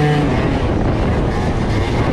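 Tuned two-stroke Piaggio Zip scooter engine with a 70 cc DR kit and Arrow Focus exhaust under way; its rising note ends just after the start as the throttle eases, leaving a low engine rumble under heavy wind rush on the microphone.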